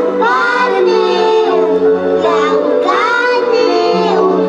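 A group of children singing a song together through stage microphones, over a steady instrumental accompaniment of held notes.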